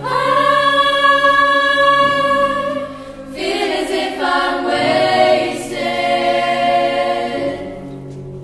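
Girls' choir singing long held chords in parts. The sound dips briefly about three seconds in, swells again on a new chord, and fades toward the end.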